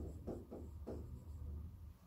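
A stylus writing on the glass screen of an interactive display: about four short scratching strokes in the first second, then it stops, over a low steady hum.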